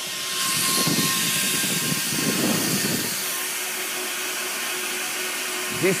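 Recording of a data center's cooling fans: a loud, steady rushing whoosh of many fans with a faint steady hum, swelling up over the first second.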